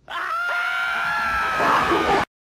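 A long, high-pitched scream held at one pitch for about two seconds, sagging slightly near the end.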